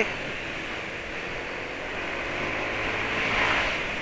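Steady wind rush and road noise from riding a motor scooter in traffic, with a faint engine drone underneath. The noise swells slightly a little after three seconds in.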